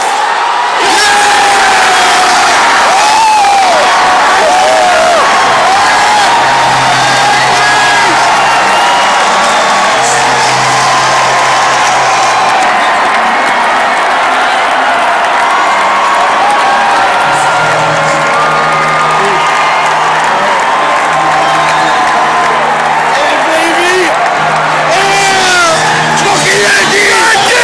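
Huge stadium crowd cheering, whooping and yelling without a break: the celebration of a World Series-clinching final out. Music plays under the crowd from about six seconds in.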